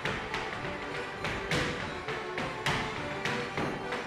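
Irish step-dance shoes striking the studio floor in quick, irregular taps, about three a second, with two louder stamps in the middle. Instrumental music plays behind the taps.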